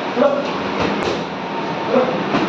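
Boxing pad work: short shouts and a single glove strike on a focus mitt about a second in, over a loud, steady noise.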